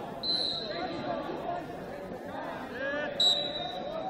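Referee's whistle blown twice: a steady, high-pitched blast of about half a second just after the start, the signal to begin wrestling from the referee's starting position, and a shorter blast about three seconds in. Voices go on underneath.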